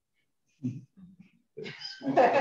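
Short, faint voice sounds: three brief murmured utterances from the first second on, like a hesitant reply beginning, growing a little louder near the end.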